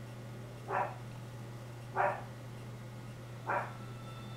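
A dog barking: three short barks about a second and a half apart, over a steady low hum.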